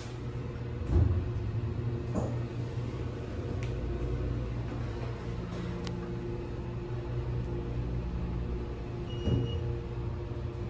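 Passenger elevator car travelling upward with a steady low mechanical hum. There is a thump about a second in, and near the end a short high electronic chime with a knock as the car reaches the next floor.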